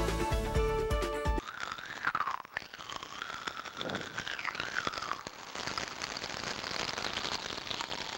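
Pop Rocks popping candy crackling: a dense, continuous fizz of tiny pops as the carbon dioxide trapped in the candy escapes. It follows a short stretch of music that cuts off suddenly about a second and a half in.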